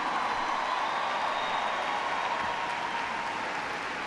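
A large audience applauding, a steady wash of clapping that slowly dies down.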